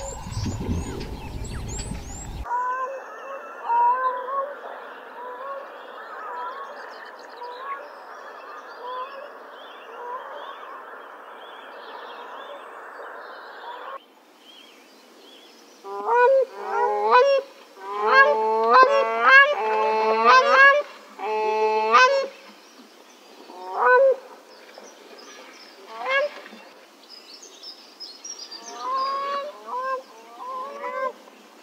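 Grey crowned cranes giving repeated honking calls. Fainter honks come at regular intervals in the first half, then loud clusters of overlapping honks from several birds just past the middle, thinning to single calls and a short burst near the end.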